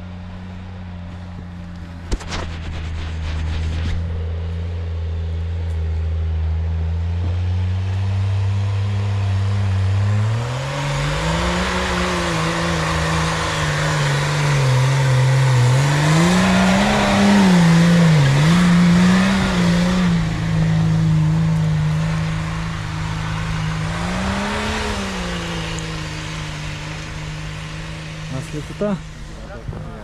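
Off-road SUV engine pulling up a snowy slope. It runs at a steady low note at first, then from about a third of the way in revs rise and fall several times under load. It is loudest past the middle, with one more rev-up near the end before it settles back to a steady note.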